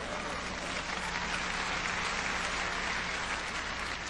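Audience applauding, heard at a distance through the preacher's microphone. It swells a little in the middle and eases toward the end, over a faint steady electrical hum.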